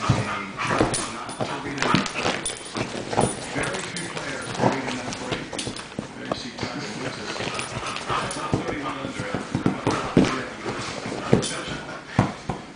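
Two dogs play-fighting, with dog noises and frequent quick scuffling bumps throughout.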